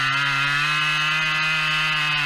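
Chainsaw running at steady full throttle with its bar buried in a felled spruce log, cutting through it; the engine note holds an even pitch under load.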